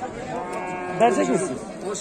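A cow mooing: one long, drawn-out call starting about half a second in.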